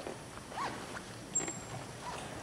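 A quiet pause with no music playing: scattered small knocks and shuffling in a concert hall, with a sharp click about one and a half seconds in.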